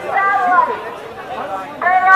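Indistinct chatter of people talking nearby in a crowd.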